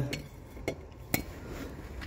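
Two short, light clinks about half a second apart, the first a little under a second in, over faint low background noise.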